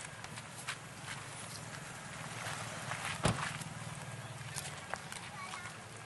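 A car door thudding shut about three seconds in, the loudest sound here, over a steady low hum, with footsteps and small knocks on the roadside.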